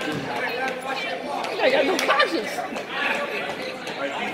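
Overlapping voices of spectators and players chattering in a large gymnasium, loudest about halfway through.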